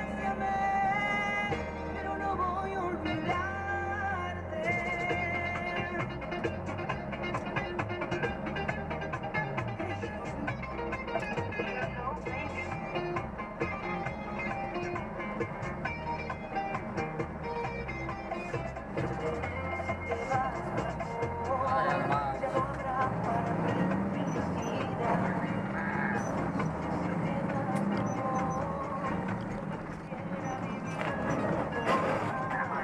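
Music from a vehicle's radio, with a bass line under it, heard inside the cab.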